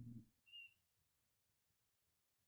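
Near silence, broken once by a brief, faint high-pitched whistle-like tone about half a second in.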